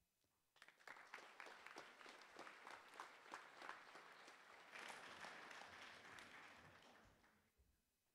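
Faint audience applause, many hands clapping, starting about half a second in and dying away near the end.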